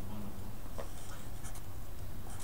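Felt-tip marker scratching on paper in a few short strokes as an arrow is drawn, over a steady low room hum.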